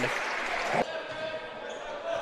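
Basketball game sound in a gymnasium: court and crowd ambience with a basketball being dribbled on the hardwood floor. The ambience changes abruptly a little under a second in, where one game clip cuts to the next.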